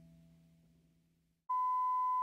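The last chord of an electric piano dies away over about the first second. After a short silence, a steady electronic beep, one pure unchanging tone, starts about halfway through and holds.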